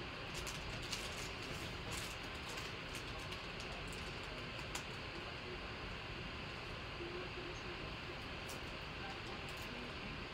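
Steady low room hiss with a few faint, short clicks.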